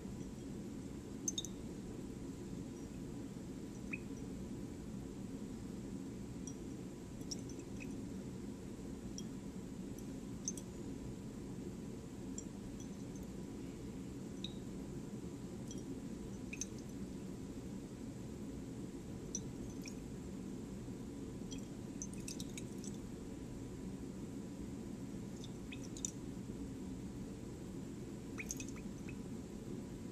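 Faint swishing of solution swirled by hand in a glass Erlenmeyer flask, with small ticks, clinks and drips every few seconds over a steady low hum. The sodium hydroxide titrant is being added drop by drop close to the endpoint of the titration.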